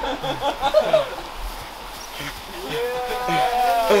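A man's voice: short chuckles in the first second, then from about two and a half seconds in a long, drawn-out vocal sound that rises and falls in pitch.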